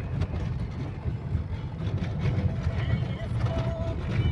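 Vehicle driving on a dirt road, heard from inside the cabin: a steady low rumble of engine and tyres.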